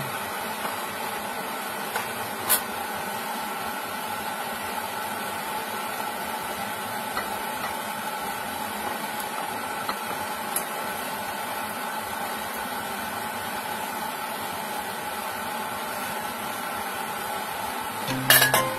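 Steady hum with a hiss, like a small motor or fan running, broken twice by faint clinks of a ladle against a glass bowl, about two and a half seconds and ten seconds in.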